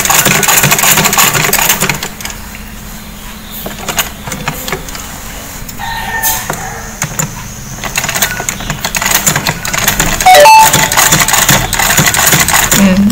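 Old black domestic sewing machine stitching a shirt collar: a fast, steady run of stitching for the first two seconds, a quieter stretch of lighter clicking, then busier stitching again from about eight seconds. A brief, very loud sharp sound comes about ten seconds in.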